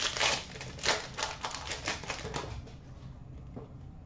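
The foil wrapper of a Panini Mosaic football card pack is torn open, then crinkles and clicks in a quick run of short, crisp crackles for about two seconds as the cards are handled. After that the handling goes on more quietly.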